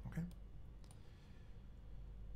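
A few faint, sharp clicks from a computer pointing device as the on-screen whiteboard page is scrolled, over a steady low hum.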